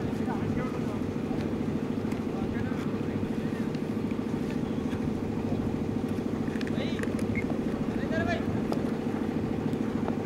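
A steady, pulsing engine-like drone runs throughout. Now and then a few faint voices call out over it.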